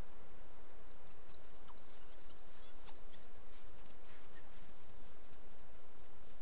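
A small bird singing a run of quick, arching high chirps, about four a second, for roughly three seconds, over a steady hiss.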